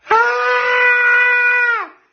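A man's loud, high-pitched vocal cry held on one steady note for almost two seconds, sagging in pitch as it cuts off.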